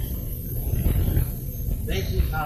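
A man's voice speaking faintly through a public-address microphone, heard under a steady low rumble of outdoor background noise in an old film recording.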